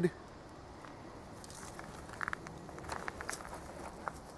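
Quiet background with a few faint clicks and rustles about two to three seconds in: handling noise from hands moving at the hard plastic barrel target.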